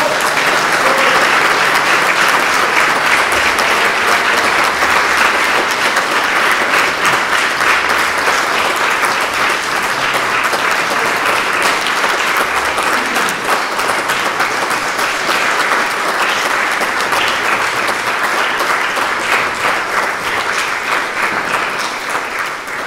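Concert audience applauding: dense, steady clapping that eases slightly near the end.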